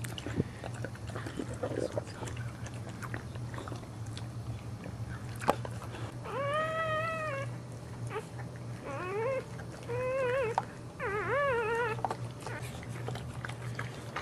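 A dog whining four times in the second half, high-pitched: the first whine long and arching, the later ones shorter and wavering. A single sharp click comes a few seconds before them, and a steady low hum runs underneath.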